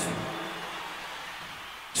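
Faint steady background of an open-air concert between announcements: the last word over the PA dies away into low crowd and stage noise.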